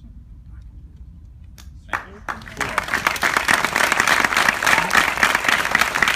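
Audience applauding, starting suddenly about two seconds in and quickly building to loud, dense clapping.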